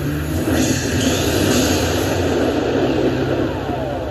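Dragon Zap slot machine playing its feature sound effect: a sustained, dense electronic whoosh as the glowing orb charges and prize values light up, over steady casino background din.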